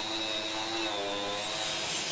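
Angle grinder with a wire cup brush running against a wooden surface: a steady motor whine over a rushing scrape, its pitch sagging slightly about halfway through.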